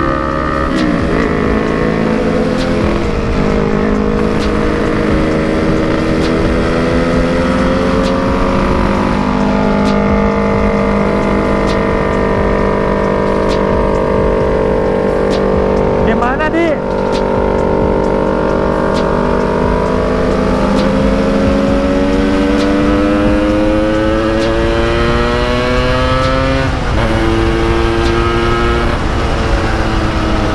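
A Yamaha RX-King's two-stroke single-cylinder engine under way. Its pitch sinks slowly to a low point about halfway through, then climbs steadily for about ten seconds, drops abruptly about three and a half seconds before the end and climbs again. A short swooping rise-and-fall of another engine cuts across it about halfway through.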